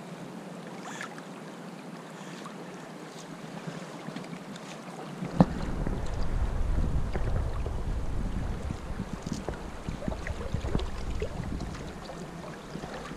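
Steady rush of river current flowing around a wading angler. About five seconds in, a knock, then a heavy low rumble of wind buffeting the microphone with a few small clicks, easing off near the end.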